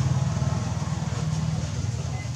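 A steady low mechanical hum with a fast flutter.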